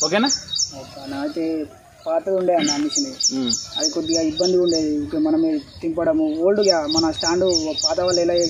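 A bird calling in rapid runs of short, high, downward-sliding notes, about five a second, in three bouts: one at the start, one a little before the middle and one near the end, over men talking.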